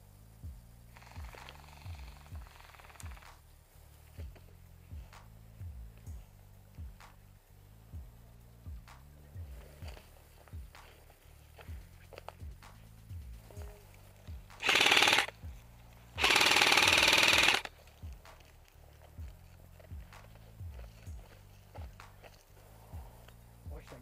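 Background music with a steady bass beat throughout. Past the middle come two short loud bursts of rapid full-auto fire from an airsoft rifle, the second about a second and a half long.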